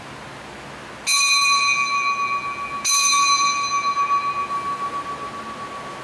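Small altar bell struck twice, about a second and a half apart, each stroke ringing on with a clear high tone that slowly fades. It is rung as the priest drinks from the chalice at communion.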